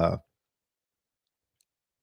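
A man's speech breaks off just after the start, followed by dead silence with no room tone at all.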